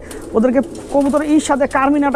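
A man talking, with domestic pigeons cooing in the loft behind him.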